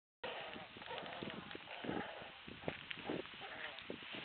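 Animals calling in a farm pen: several short, quivering cries, with scattered knocks and clicks between them.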